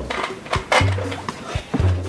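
Background score music with low bass notes, and a few short clicks over it.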